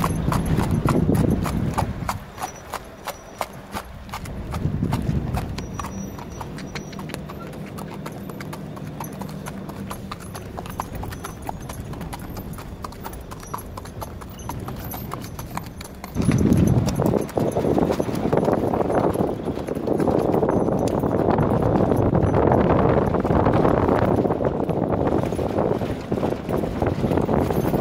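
Hooves of a grey Arabian colt under a rider, a steady run of clip-clopping hoofbeats on hard sandy ground. About two-thirds of the way in, a louder rushing noise comes up and covers the hoofbeats.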